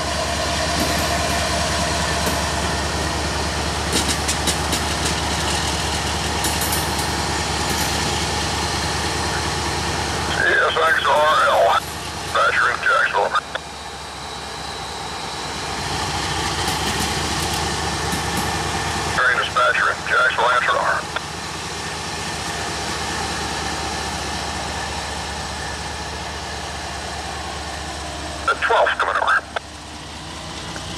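Steady low rumble of a diesel freight locomotive running. Bursts of voices come in about ten, nineteen and twenty-nine seconds in.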